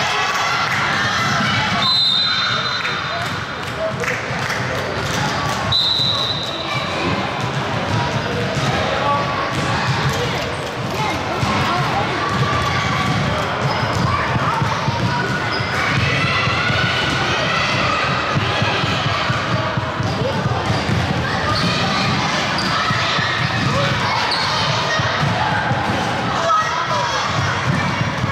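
Basketballs bouncing on a hardwood gym floor during play, with repeated dribble thuds and voices calling out, all echoing in the large hall. Two brief high-pitched tones sound about two and six seconds in.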